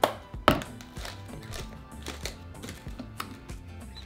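Hard plastic knocks and clicks from a blender cup being handled on the counter and its blade assembly unscrewed and lifted off: two sharp knocks at the start, the louder about half a second in, then lighter ticks. Soft background music plays underneath.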